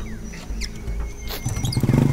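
A motorcycle engine idling with a low steady rumble that grows louder about one and a half seconds in, under short high-pitched chirps.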